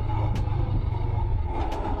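Motorcycle engine running steadily at cruising speed, a low even hum under wind and road noise.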